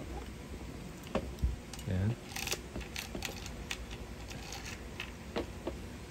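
Light, scattered clicks and taps of gel blaster parts being handled as a new spring is fitted onto its metal spring guide.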